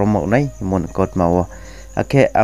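A voice narrating in the Bru language, with a short pause about three-quarters of the way through, over a steady low hum.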